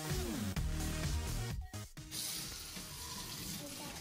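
Background music for the first half, then it cuts out and a kitchen tap is heard running steadily into a steel sink.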